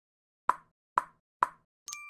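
Logo-animation sound effect: three short plops about half a second apart, then a bright ringing chime that starts just before the end.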